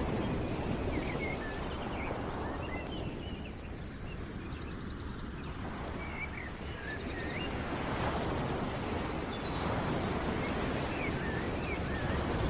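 Outdoor nature ambience: small birds chirping and trilling over a steady rushing noise that dips briefly and swells again.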